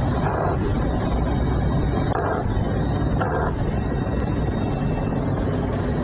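Aircraft in flight heard from inside the cockpit: steady, loud engine and airflow noise, with three brief louder surges in the first half.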